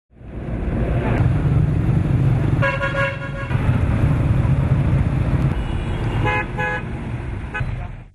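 Busy street traffic with a steady engine rumble and vehicle horns honking: one long honk about three seconds in, then several short beeps near the end.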